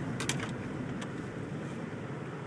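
Car engine and road noise heard from inside the cabin as the car drives: a steady low rumble, with a few light clicks in the first second.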